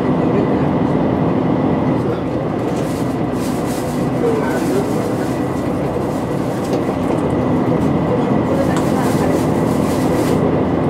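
Inside a JR Shikoku 2000 series diesel railcar: the steady running noise of its diesel engines, with a constant low hum.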